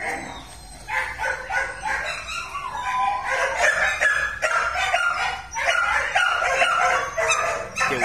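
A Belgian Malinois barking and whining in quick repeated calls, with a rooster crowing around the middle.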